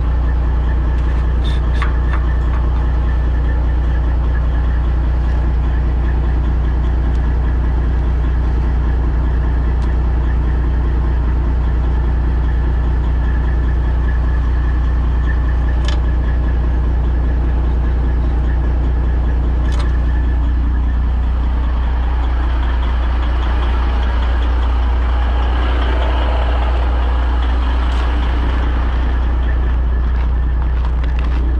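Semi truck's diesel engine idling close by, a loud, steady low drone, with a few light clicks over it. Toward the end a rougher rustling noise rises over the drone.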